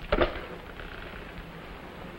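Steady hiss and crackle of an old film soundtrack, with a short knock or scuff just after the start.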